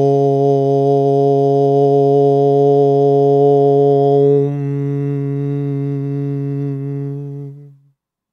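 A man chanting one long "Om" on a steady low pitch; the open vowel closes into a softer hum about four and a half seconds in, and the chant ends just before the eight-second mark.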